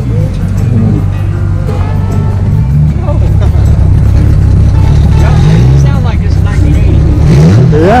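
A motorcycle engine idling steadily, getting louder about three seconds in, with a few brief swells in pitch.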